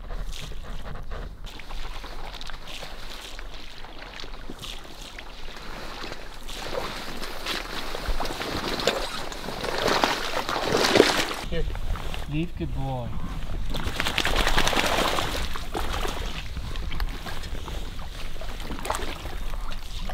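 Water sloshing and splashing as a dog swims through marsh water carrying a duck, growing louder in the second half. About twelve seconds in there is a brief wavering, pitched voice-like sound.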